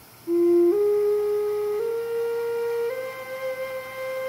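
Native American flute played in four rising steps, the last note held: a test-play to check the tuning after a finger hole was burned larger to sharpen a flat note, which now sounds much better.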